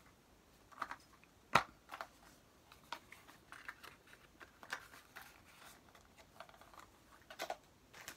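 Small items and packaging being handled by hand: scattered light clicks, taps and rustles, with one sharper click about a second and a half in.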